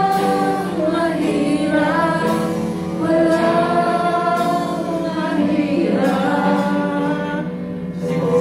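Live worship song from a church praise band: a singer on a microphone with guitars, amplified through a loudspeaker, holding long notes that slide from one pitch to the next.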